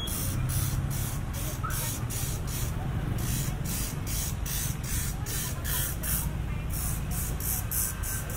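Street ambience: a steady low rumble of road traffic, overlaid by a high hiss that pulses on and off about three to four times a second.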